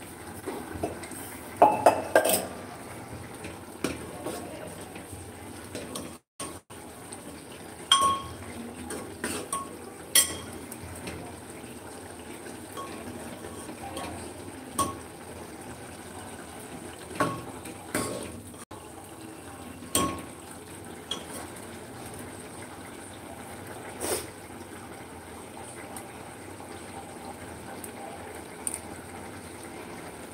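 Steel ladle stirring a thick curry in an aluminium pot, knocking and scraping against the pot's rim and sides in scattered clinks, a quick cluster about two seconds in and single knocks every few seconds after. A steady low hiss lies under it.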